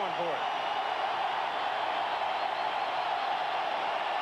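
Stadium crowd noise from a televised football game: a steady, even din with no single event standing out. The tail of a commentator's voice is heard at the very start.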